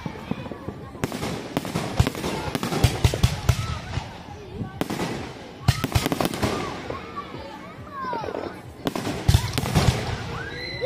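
Aerial fireworks bursting overhead: an uneven run of sharp bangs and crackles, with a cluster of heavy bangs near the end.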